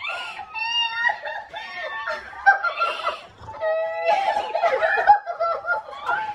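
Several people squealing, laughing and crying out together in high, overlapping voices: a surprised family's delighted reaction on seeing new puppies.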